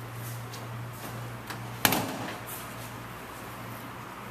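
A single sharp thunk of a car latch about two seconds in, with a couple of light clicks before it, over a steady low hum.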